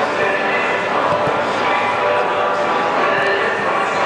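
Many overlapping voices, indistinct shouts and chatter, at a steady level with no single voice standing out.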